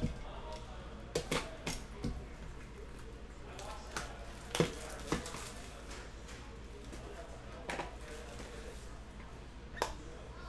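Cellophane shrink wrap crinkling and being torn off a cardboard trading-card box, heard as scattered sharp crackles and clicks about a second or so apart, over a steady low hum.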